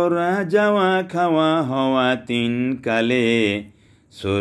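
A man's voice chanting rhymed Bengali verse in a sing-song melody, holding long notes in phrases with short breaths between them. It is a grammar mnemonic on the Arabic verb and its signs.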